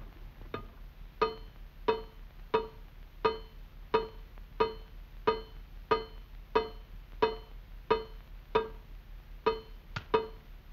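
Cartoon water-drip sound effect: a faucet dripping into a metal pan in a sink, a short pitched plink repeating evenly about every two-thirds of a second, some fifteen drops in all.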